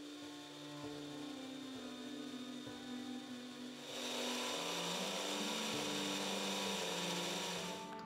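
Small electric grinder whirring as it grinds dried yarrow to a powder. It gets louder about four seconds in and stops suddenly at the end, with soft background music underneath.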